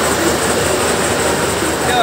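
Fairground spinning ride in motion, its machinery making a steady, even running noise with voices of the fair around it; someone cries out right at the end.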